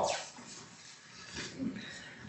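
A group recitation of the Pledge of Allegiance ends right at the start. After it comes quiet council-chamber room noise, with a faint, brief sound about a second and a half in.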